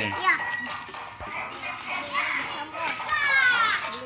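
Young children's high voices: brief chatter, and near the end a long high-pitched call falling in pitch.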